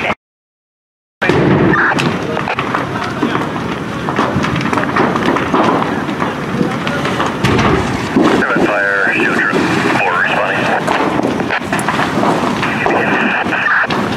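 Fully involved building fire burning, with dense crackling and sharp pops throughout. The sound cuts out for about a second right at the start.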